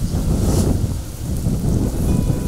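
Wind buffeting the microphone outdoors: a loud, uneven low rumble of noise.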